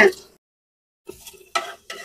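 Metal spoon scraping and clinking against the bottom of a metal pot, stirring rock sugar crystals into a little oil; the faint, scattered scrapes start about a second in, after a stretch of silence.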